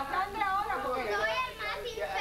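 A girl's voice reading aloud in Spanish, with children's voices around her.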